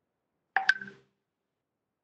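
A brief electronic chime from the video-call software, with two quick notes, lasting about half a second.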